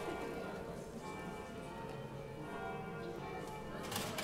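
Church bells ringing, many overlapping tones sounding together and held throughout.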